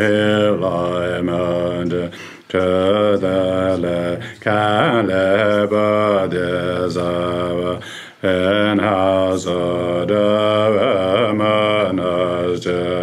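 A man's solo voice chanting a Tibetan Buddhist prayer in long melodic phrases, with short breath pauses about two, four and eight seconds in.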